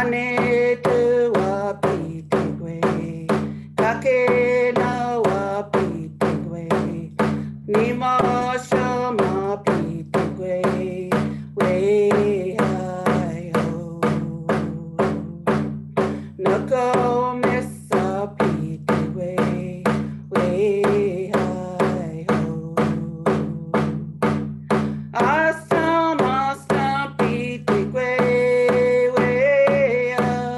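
A woman sings a Cree honour song in phrases, with short pauses between them. She accompanies herself on a round frame hand drum, struck in a steady beat of about two strokes a second.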